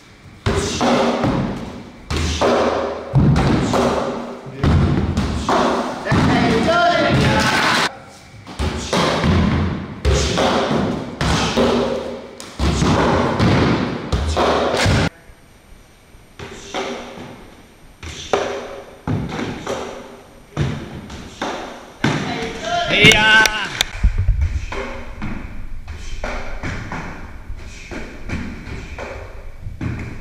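Repeated heavy thuds of punches and kicks landing on padded, tape-wrapped striking posts, about one or two a second. The strikes are loud at first and fainter in the second half, with a low hum underneath near the end.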